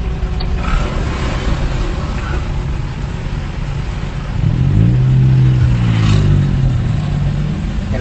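Traffic noise inside a car as it slows to a stop, recorded by its dashcam: a steady low rumble of engine and road. From about halfway through, a deeper pitched engine hum rises and then falls for about three seconds.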